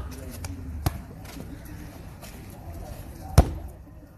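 A football thudding hard once, about three and a half seconds in, with a faint knock about a second in.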